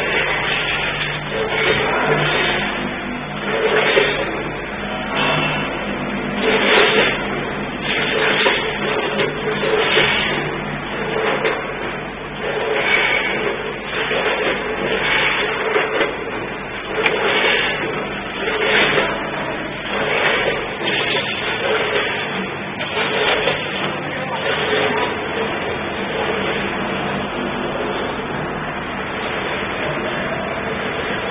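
Automatic packaging machine running through its cycle, with a burst of mechanical clatter about every one and a half seconds over a steady low hum.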